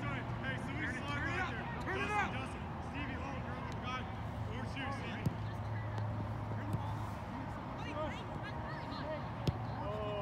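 Players calling out to each other across a soccer pitch, voices distant and unclear, with a few sharp knocks of the ball being kicked over a steady low hum.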